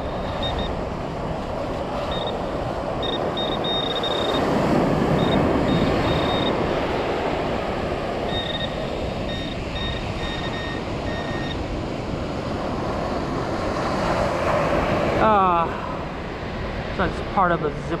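Handheld metal-detecting pinpointer beeping on and off in short high-pitched pulses as it is pushed through a pile of dug beach sand to close in on a target, over a steady rushing noise. A few quick falling chirps come about three-quarters of the way through.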